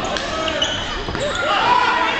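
Sounds of a basketball game in a gym: voices of players and spectators calling out, with the knock of the basketball during a shot at the basket.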